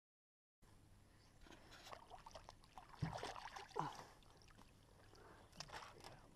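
After a brief dead gap, faint water splashing and dripping beside a small boat as a rope is worked around a large fish at the surface, with a sharp knock about three seconds in.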